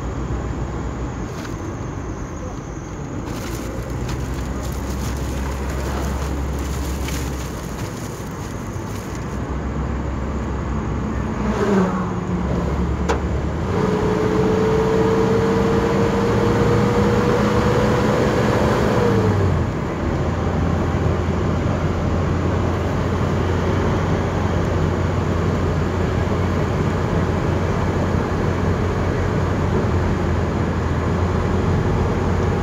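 Engine and road noise of a Toyota vehicle heard from inside the cabin as it drives a winding mountain highway: a steady low engine hum that steps in pitch now and then. Midway, a whine rises slowly in pitch for several seconds, then drops away.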